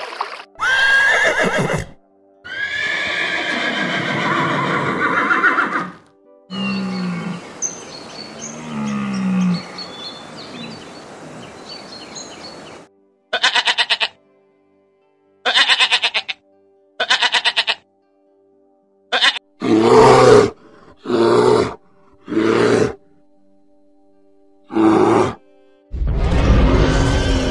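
A string of different animal calls, one after another, over background music. From about halfway on there is a goat bleating: several short, wavering bleats with gaps between them.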